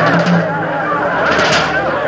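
A crowd of many voices shouting and cheering all at once.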